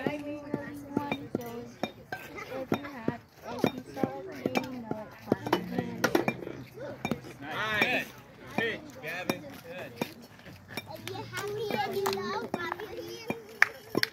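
Children's and adults' voices chattering, none of it clear, with a child's high-pitched call about eight seconds in and frequent short clicks and clinks.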